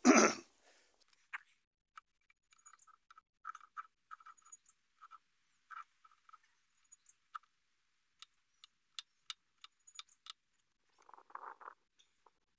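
A man coughs once. Then a hand lever grease gun, being worked onto the forklift's grease nipples, makes irregular small clicks and short squeaks, with a denser burst near the end.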